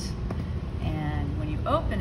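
Speech over a steady low background rumble.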